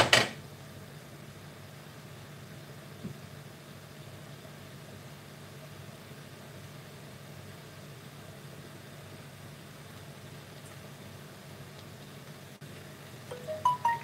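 A stainless steel saucepan of drained potatoes clanks once on the gas hob's pan support at the start, set back over the flame to dry the potatoes out. A steady low hum follows from the lit gas burners.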